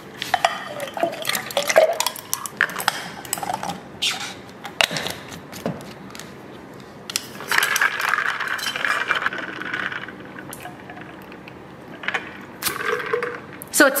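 Ice and water rattling and sloshing inside a stainless steel water bottle as it is shaken, after a few seconds of clinks and knocks as the bottle is handled and capped.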